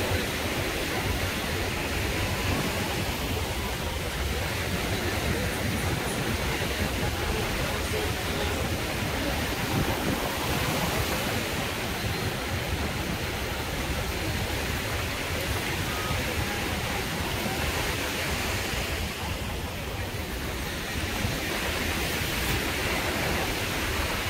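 Steady beach ambience: a continuous wash of small waves and wind rumbling on the microphone, with faint voices of people around.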